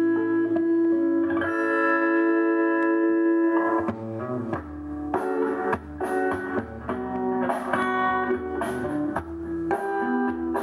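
Guitar playing a passage without singing: a chord rings out for about two seconds in the first half, then plucked notes and chords follow one after another.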